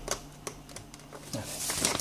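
Several sharp clicks from a handheld multimeter's rotary range switch being turned through its detents to the DC range, followed near the end by rustling handling noise as the hand moves the leads and meter.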